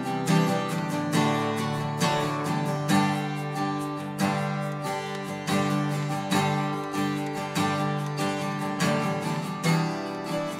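Two acoustic guitars strumming chords in a steady, even rhythm, with no singing.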